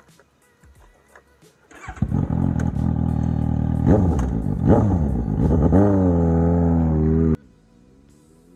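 Suzuki GSX-S750's inline-four engine breathing through a TOCE slip-on exhaust. It is revved about two seconds in, with two quick throttle blips that rise and fall, then held at a steady high rev that cuts off suddenly near the end.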